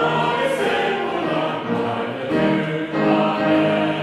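Congregation singing a hymn together in unison-style chorus, moving through held notes.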